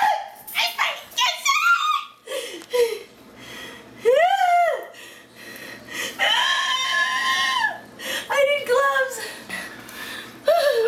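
A woman squealing and shrieking in disgust and fright at a live cockroach, with nervous giggles: a string of high-pitched squeals that arch up and down, and one long held shriek about six seconds in.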